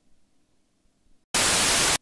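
Near silence, then a little over a second in a short burst of loud static hiss, about half a second long, that starts and cuts off abruptly.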